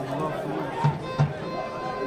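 Football stadium crowd sound with held, music-like tones running through it and two short beats a little after a second in.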